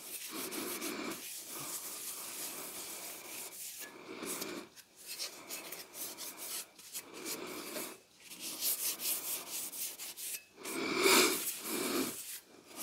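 A rag wiping oil over a blued steel axe head in a run of rubbing strokes with short pauses between them. The strokes are loudest near the end.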